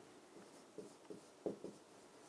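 Pen writing on a board: a few faint, short strokes as a figure is written out.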